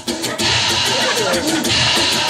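Acoustic guitar strummed in a steady rhythm, an instrumental passage without singing.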